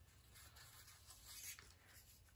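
Near silence: faint rustling of paper and card stock being handled on a cutting mat.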